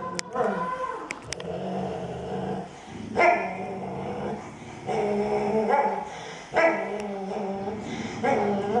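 Two dogs growling and grumbling at each other in snarling back-and-forth stretches of about a second each, with short breaks between. They are squaring off over a chew bone.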